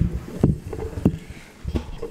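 Handling noise on a desk gooseneck conference microphone: a handful of low, irregular thumps and knocks as the microphone base is touched and worked by hand.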